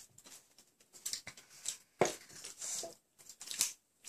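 Scattered short scrapes, taps and rustles of forks on plates and sweet packets being handled at a table, the loudest about two seconds in.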